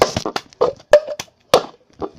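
Hands clapping and a cup being tapped on a hard surface in the cup-game routine: a quick, uneven run of about half a dozen sharp claps and knocks.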